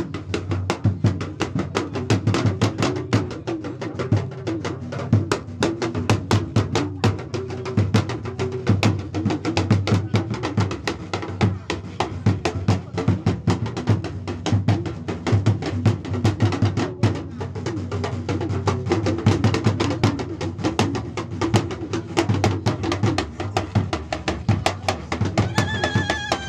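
Drumming with fast, dense, irregular strokes, over a low murmur of voices.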